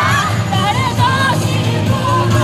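YOSAKOI dance music playing loudly, a sung melody over a steady low bass.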